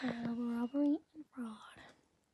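A person's voice only: a drawn-out, sing-song vocal sound held on one pitch, stepping up, then a short rising-and-falling call about halfway through.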